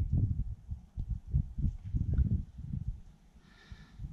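Gusts of wind buffeting the camera microphone, an uneven low rumble that dies away to a lull near the end.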